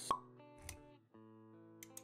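Logo-intro music with a sharp pop sound effect just after the start, a soft low thud a little later, then the music's sustained tones carrying on after a brief drop about halfway through.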